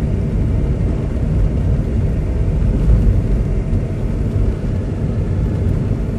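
Ford Mondeo driving on a snow-covered road, heard from inside the cabin: a steady low rumble of engine and tyre noise.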